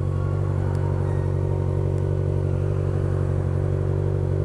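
Kawasaki Ninja 1000's inline-four engine running at a steady, even pitch.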